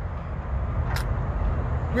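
Steady low rumbling outdoor background noise with one short sharp click about a second in.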